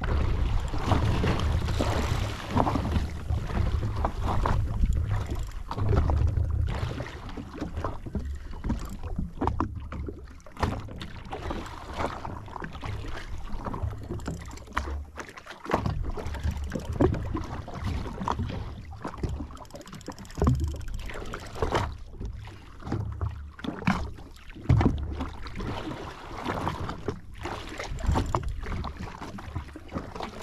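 Wind buffeting an action-camera microphone at sea, coming in irregular gusts of low rumble, with small waves slapping and splashing against a jetski's hull.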